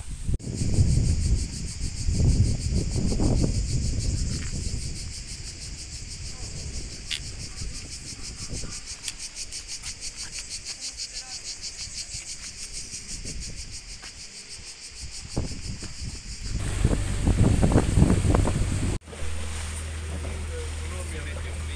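Insects chirring in a fast, even pulse over gusts of wind buffeting the microphone. Near the end the wind grows louder. After a sudden cut, a low steady hum begins.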